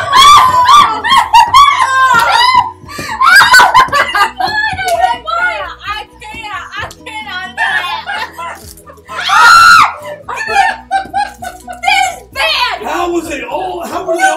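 A group of people shrieking, exclaiming and laughing in reaction to tasting a bad-flavoured jelly bean, with one long, loud scream about nine and a half seconds in. Background music plays underneath.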